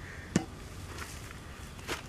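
A digging tool striking hard earth twice, about a second and a half apart, each a short sharp hit.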